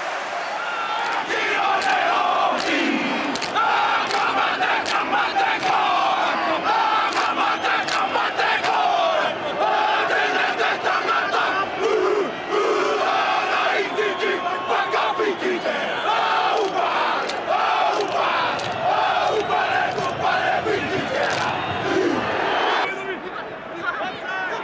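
The New Zealand All Blacks performing the haka, a chant shouted together by the team, over the noise of a large stadium crowd. It breaks off shortly before the end.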